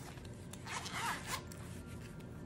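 Zipper of a zip-around wallet being pulled open in one short run of about a second, near the middle.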